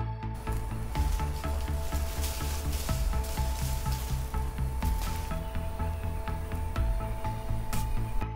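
Background music with a steady beat, a heavy bass line and held high notes over it.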